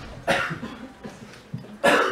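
A person coughing twice: a short cough about a quarter second in, then a louder one near the end.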